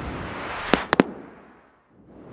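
Logo-intro sound effect: a noisy swell with three sharp pops close together about a second in, then fading away.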